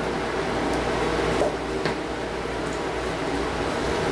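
Steady background hum and hiss in a small room, with light rustling and a couple of faint clicks as someone moves close past the microphone.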